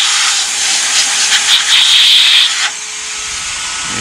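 Vacuum cleaner run in blow mode, air rushing out through its hose and a plastic-bottle nozzle as a steady hiss, with a high whistle that comes and goes. The rush drops to a quieter level about two-thirds of the way through.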